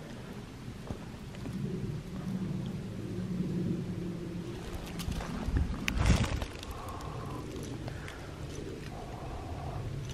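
Dry grass, sticks and wood chips rustling as they are handled and pushed into a metal camp cup, with small clicks and a louder rustle and bump about six seconds in, over a faint low hum.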